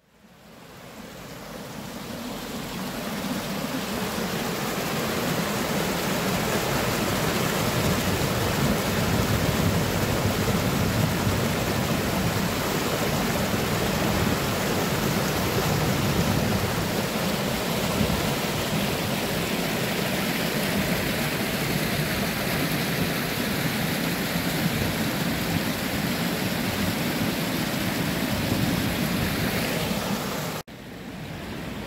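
Shallow stream water rushing and splashing over rocks and a low stepped weir: a steady, full rush of water that fades in over the first few seconds.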